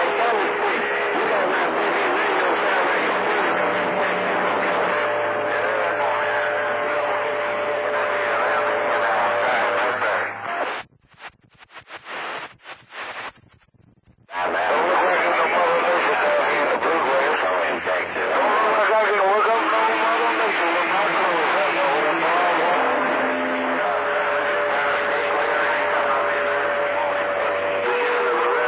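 CB radio receiving long-distance skip on channel 28: garbled voices buried in static, with steady whistling tones over them. About ten seconds in, the signal drops out for roughly four seconds, then comes back.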